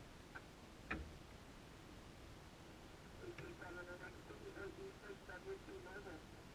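A faint, thin voice over a radio speaker begins about three seconds in and continues in short broken phrases. It follows a single sharp click about a second in.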